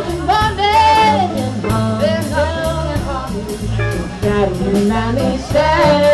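A live soul and blues-rock band playing: women's voices singing over upright bass, guitar and a drum kit keeping a steady beat.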